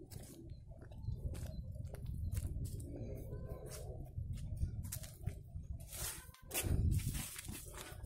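Footsteps and the rustle of grass and leaves as someone walks along a field path and into undergrowth, with irregular small clicks over a low steady rumble. A louder brushing rustle comes about six and a half seconds in.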